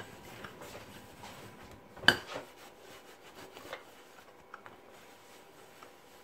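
A frying pan being handled: one sharp clank about two seconds in, followed by a few faint light knocks and rubbing.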